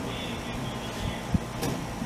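Steady hum and rush of a running room air conditioner, with one short low thump a little past halfway and a sharp click soon after.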